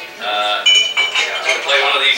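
People talking in a room, with a brief high ringing clink about two-thirds of a second in.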